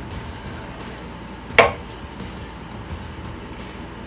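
A knife cutting through a bacon-wrapped, sausage-covered armadillo egg on a wooden cutting board. There is one sharp knock about one and a half seconds in as the blade comes through onto the board.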